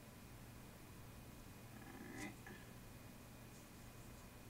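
Near silence: steady low room hum, with one brief faint click-like sound a little over two seconds in.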